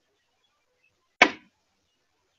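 A single sharp bang about a second in that dies away within a fraction of a second.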